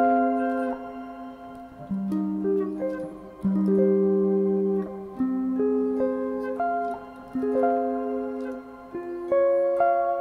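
Seven-string electric guitar playing minor triad inversions as picked arpeggios, moved across the strings. The notes of each three-note shape ring into one another, and a new shape starts about every one and a half seconds.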